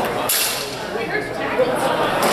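Indistinct voices of people talking in a large, echoing hall.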